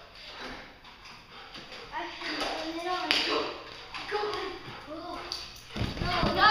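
Wordless playful vocal sounds rising and falling in pitch, starting about two seconds in. A sharp tap comes about three seconds in.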